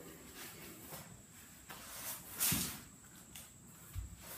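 Quiet handling and movement sounds: rustling, with a soft thump about halfway through and a sharper one at the end, as a person kneeling on an artificial-turf mat shifts and picks up lacrosse balls.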